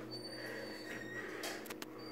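Otis hydraulic elevator's stainless car doors sliding the last bit shut, closing with two sharp clicks about one and a half seconds in, over a steady low hum.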